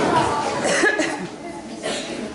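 Playback music fades out within the first half second, leaving the murmur of a hall full of children. Short coughs come about a second in and again near the end.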